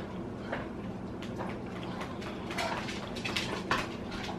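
Two pet dogs playing and tussling over a bone: faint scattered clicks and a few short, brief noises over a low steady room hum.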